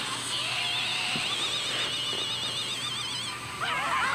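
Anime electric-attack sound effect: a crackling hiss with a high, wavering warble over it for about three seconds. Near the end several voices break into screams.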